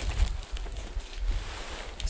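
A large cardboard box holding a heavy subwoofer being turned on a carpeted floor: cardboard rustling and scuffing under the hands, with a few low thumps mostly near the start.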